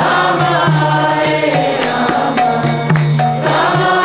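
Devotional chanting with singing voices over a sustained low drone and regularly repeating percussion strikes.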